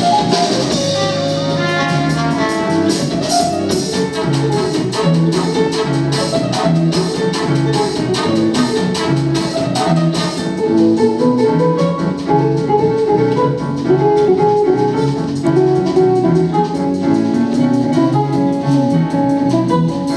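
A jazz sextet of piano, double bass, drum kit, guitar, trombone and trumpet playing an instrumental piece, with brass and drums heard; the cymbal and drum strikes are busiest in the first half.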